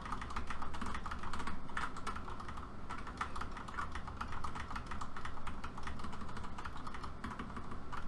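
Computer keyboard keys tapped rapidly and repeatedly, a steady run of quick key clicks: arrow-key and frame-step presses used to nudge a keyframed joint frame by frame.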